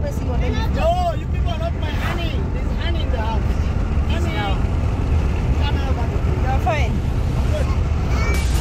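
Steady low rumble of a vehicle's engine and road noise, heard from inside the moving vehicle. A voice rises and falls over it in snatches.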